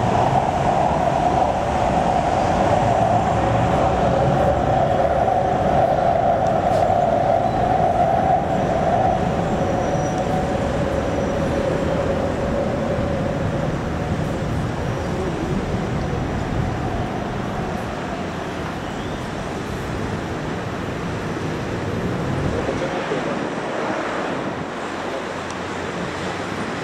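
Elevated BTS Skytrain running along its viaduct with a steady whine that sinks slightly in pitch and fades over the first ten seconds or so. Steady road traffic noise continues underneath throughout.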